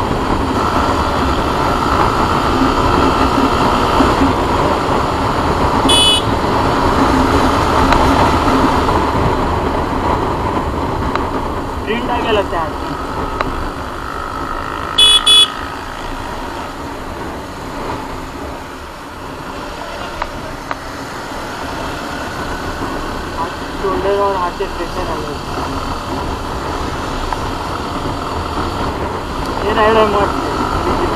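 Motorcycle running at highway speed, its engine and road noise under wind rushing over the microphone. Short high-pitched horn beeps sound about six seconds in, and a quick double beep comes about fifteen seconds in.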